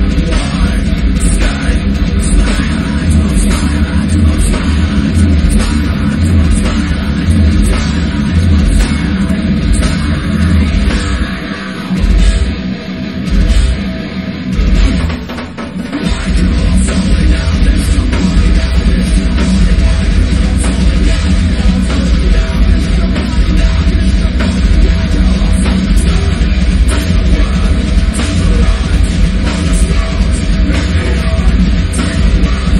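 Live heavy metal band playing: a drum kit struck hard under heavy distorted guitars. Between about twelve and sixteen seconds in, the music breaks into short stop-start hits before the full band runs on again.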